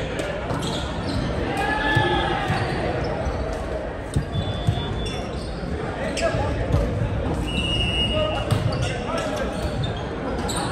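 Echoing din of a busy volleyball gym: many overlapping voices, with sharp slaps of volleyballs being hit and bounced, the loudest a few seconds in and again near seven seconds. Two short high squeak-like tones sound around the middle and near the end.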